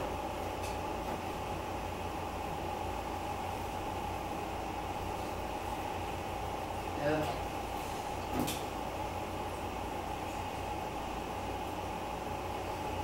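A steady low hum with a faint held tone, broken by a short vocal sound about seven seconds in and a single click about a second later.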